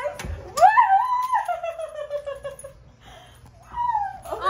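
A woman's high-pitched excited squeal, held for about two seconds and falling slowly in pitch, then a shorter squeal near the end.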